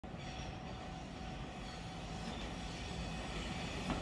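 Moka Railway Moka 14 diesel railcar approaching, heard as a low, steady rumble that grows slightly louder.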